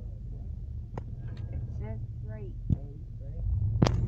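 Steady low rumble of a moving car heard from inside the cabin, growing louder near the end, with a couple of sharp clicks.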